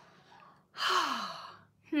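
A woman's long, breathy sigh about a second in, its pitch falling, followed at the very end by a short "hmm".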